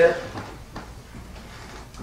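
A man's voice finishing a word, then a pause with steady room tone and a few faint small clicks before he speaks again.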